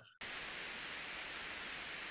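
A steady burst of white-noise static, flat and even, switching on abruptly just after the start with no fade. It is edited in over the speaker's remark like a censor noise, after he offered to have the remark cut as too risky.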